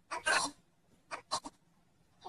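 A person's voice making a short wordless sound, followed about a second later by two brief sharp sounds.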